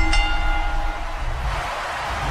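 Intro sound effect: a horn-like chord of steady tones that fades out about a second in, over a noisy rush and a deep rumble.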